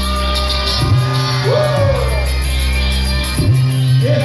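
A live hip-hop band playing amplified through a festival PA: a steady, repeating bass line with a sung vocal line gliding above it.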